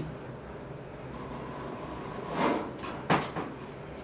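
Handling noises over a steady hiss: a brief rustle a little past halfway, then a single sharp click.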